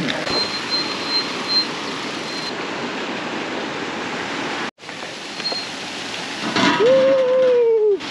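Steady rushing outdoor noise, briefly cut off a little past halfway. Near the end a voice holds one long call.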